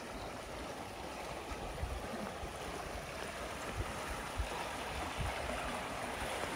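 Water flowing steadily along a stone aqueduct channel, an even rushing, with scattered low thumps.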